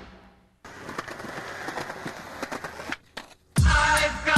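Music fades out; after a brief silence, skateboard wheels roll over rough concrete with small clicks for about two seconds. Near the end, a new music track with a heavy bass beat starts loudly.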